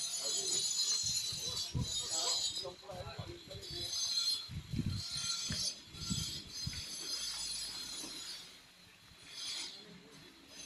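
A high-pitched insect chorus buzzing in pulsing waves, over irregular low thuds.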